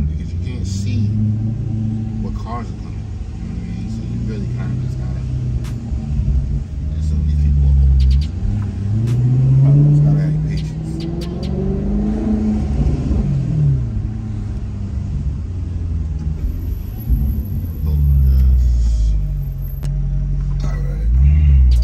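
A car's engine heard from inside the cabin, running low and steady at low speed. Its pitch rises as the car accelerates about nine seconds in, then falls away a few seconds later.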